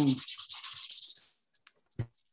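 A sponge scrubbing quickly back and forth over silk-screen mesh stretched in a hoop, wiping off water-based printing ink to clean the screen; the strokes fade out about one and a half seconds in. A short knock near the end.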